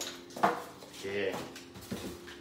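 Hard objects knocking on a tabletop: one sharp clack about half a second in and a lighter one near the end.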